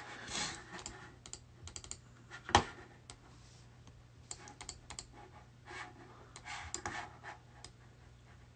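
Quiet typing and clicking on a computer keyboard: scattered light key clicks, with one louder knock about two and a half seconds in.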